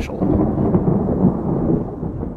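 A loud, low rumbling noise that runs steadily, with its sound sitting in the low and middle range and no clear speech.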